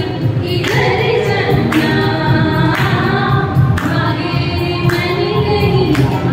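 A woman singing a Hindi song, amplified through a microphone, in held melodic phrases of about a second each over a steady musical accompaniment.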